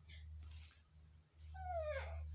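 A short, high whine that falls in pitch, about one and a half seconds in, over a low steady hum.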